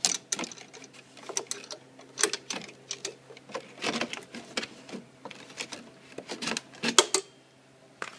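Bungee-cord hooks being unhooked from the bolts on a steel RC-car trailer: an irregular run of small metal clicks and rattles, with one louder clack near the end before it stops.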